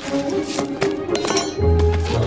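Film score music with held notes, over a few light metallic clinks from a spoon digging into soil.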